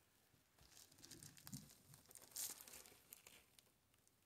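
Faint crinkling and rustling of red plastic deco mesh being handled and bunched by hand on a wire wreath frame, with a slightly louder rustle about two and a half seconds in.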